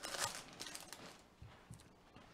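Foil wrapper of a baseball card pack crinkling as it is torn and pulled open, loudest in the first half second, then faint rustles as the cards slide out.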